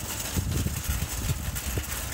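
Wind buffeting the microphone: an irregular low rumble with many small bumps and no steady pitch.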